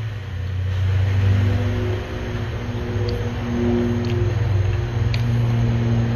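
A steady low mechanical hum with a few faint higher tones over it and some faint ticks.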